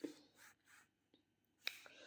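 Near silence: room tone, with one faint click near the end.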